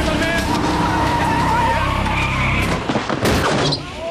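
Street traffic and a car engine running, with a short cluster of sharp knocks about three seconds in.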